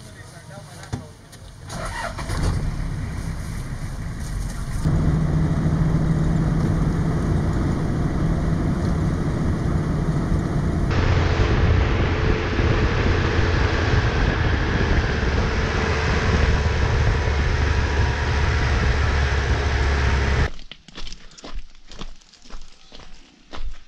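A vehicle driving along a road, heard from outside: a loud, steady rumble of engine and tyres with a rush of wind. It stops abruptly near the end, followed by a few irregular sharp knocks.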